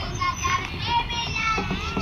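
High-pitched children's voices calling out, rising and falling, over the low rumble of a passing train.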